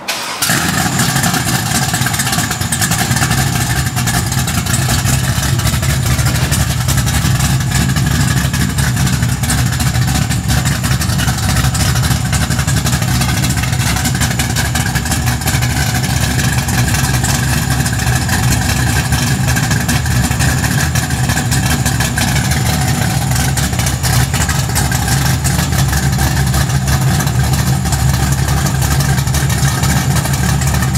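421-cubic-inch stroker LS V8 in a 1975 Buick LeSabre, running at a steady, loud idle with a deep exhaust note.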